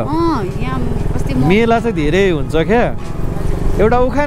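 Voices talking over a motorcycle engine running at riding speed, with a steady low rumble under the speech.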